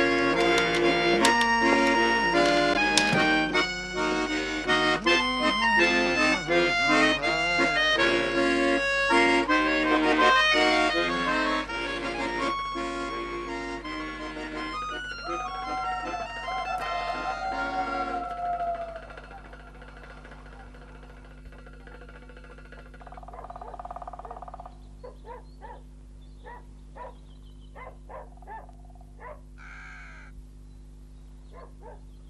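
Accordion playing a lively tune that stops about two-thirds of the way through. After it stops, things are much quieter, with a few scattered short sounds.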